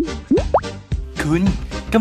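Background music with a beat, with two quick rising cartoon 'bloop' sound effects in the first half second. About a second in, a voice starts speaking in Thai over the music.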